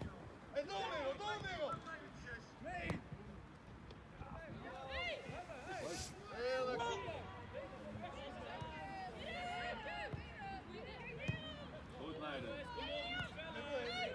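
Indistinct shouts and calls from soccer players and sideline spectators on an open pitch, overlapping throughout. A few sharp knocks of the ball being kicked stand out, about three seconds, six seconds and eleven seconds in.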